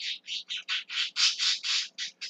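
A man laughing almost silently: a quick run of about ten breathy, wheezing gasps, some five a second, with little voice in them.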